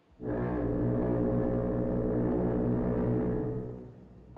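A ship's foghorn sounding one long, low, steady blast that starts suddenly just after the beginning and fades away shortly before the end.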